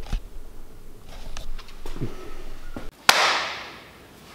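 Handheld camera being moved: small knocks and rustles, then a sudden sharp noise about three seconds in that fades away over about a second.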